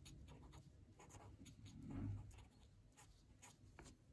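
Pen writing on paper: faint, short scratching strokes in quick succession.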